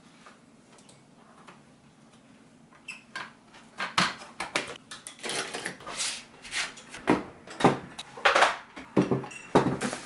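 Art supplies being handled and cleared off a desk: after about three seconds of quiet, a ragged run of knocks, clatters and rustles as a watercolour pan set and a painting taped to its board are picked up and moved.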